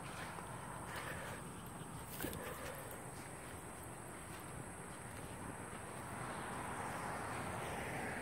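Faint outdoor ambience: a low, even hiss with a steady high-pitched drone, and a few soft ticks, one a little over two seconds in.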